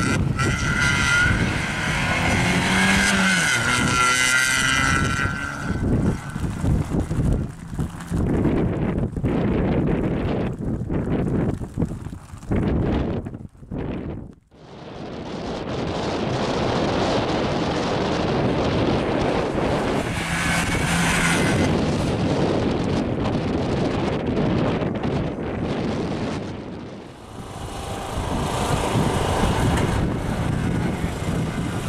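Škoda Fabia slalom car's engine revving hard, its pitch rising and falling with throttle lifts and gear changes as it is thrown through the cones. The sound drops away briefly about halfway through.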